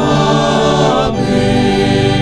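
A small group of men singing together as a choir in a church service, holding long sustained notes.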